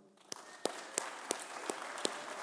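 Audience applauding: a light, spread-out clapping with a handful of sharper single claps standing out.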